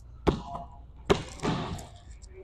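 Basketball dribbled on a hardwood gym floor: two bounces a little under a second apart.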